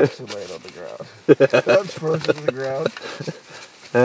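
A person's voice: a laugh at the start, then a short stretch of indistinct talking or laughter in the middle.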